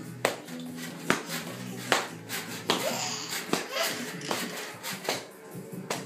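Baby bouncing in a doorway jumper: a steady run of sharp knocks, roughly one a second, loudest in the first two seconds, with a few short squeals from the baby, over background music.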